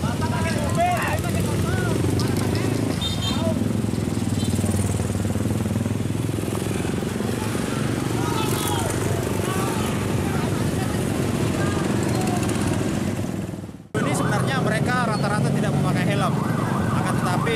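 Motorbike engines running as a convoy rides past on the street, with people shouting over them. The sound fades out and cuts off a little before the end, after which a man speaks over the same traffic noise.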